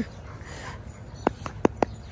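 A dog giving four quick, sharp yips in a row just past the middle.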